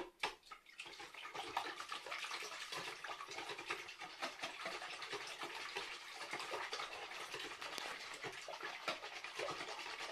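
Wire whisk beating a thin liquid blini batter mixture in a plastic bowl: a fast, steady run of light scraping and clicking strokes of the wires against the bowl.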